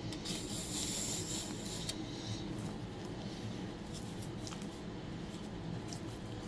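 A paper packet of instant chicken broth seasoning being handled, rubbing and rustling, with a soft hiss for about a second and a half near the start and a few faint clicks after.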